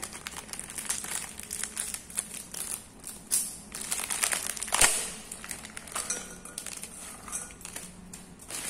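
Plastic bag crinkling as it is handled and shaken, with dried anchovies rustling as they are tipped into a stainless steel bowl. An irregular run of crackles, the sharpest about five seconds in.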